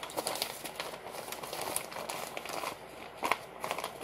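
Plastic flour packet crinkling as it is handled to add more tempura flour to the batter: a run of irregular crackles and rustles, with one louder crackle a little after three seconds in.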